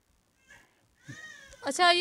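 A pause in conversation: near silence, a faint short sound about half a second in, a faint gliding high call about a second in, then a voice says 'achha'.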